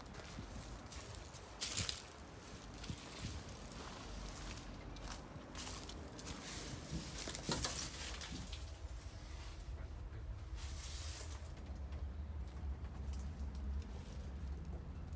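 Irregular rustling and crunching of footsteps in dry leaves and debris, with a few louder crunches and a low rumble in the second half.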